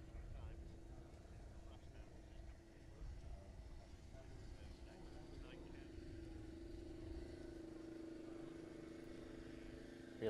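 Faint steady engine hum, growing louder about halfway through, over low wind rumble, with faint distant voices.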